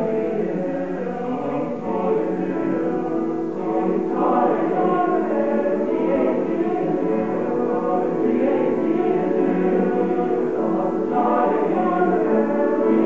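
Male high school choir singing in several-part harmony, with long held chords.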